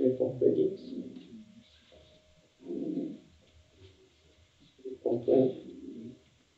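A man's low, muffled murmuring through a face mask in three short stretches, with no clear words, close on a clip-on microphone.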